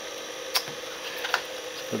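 A few light clicks from hands handling a multimeter and its test leads, over a faint steady hum.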